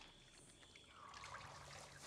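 Near silence with faint trickling bathwater, a little louder from about a second in.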